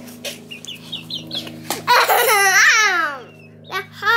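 A young hen peeping, a row of short falling chirps in the first second and a half, then a young child laughing loudly for about a second, with a steady low hum underneath.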